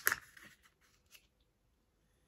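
A folded paper note rustling briefly as it is handled and put into a glass of water, with a faint tick about a second in.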